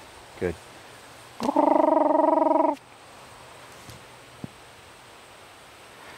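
A single loud, buzzy call held at one steady pitch for about a second and a half, made as a distraction to tempt a young bird dog holding on 'whoa'.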